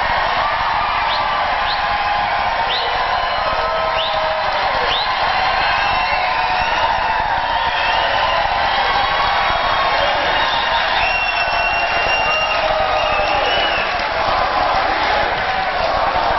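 A large indoor crowd cheering, whooping and applauding in one long sustained ovation. Several short rising whistles come in the first few seconds, and a few longer held whistles come about two-thirds of the way through.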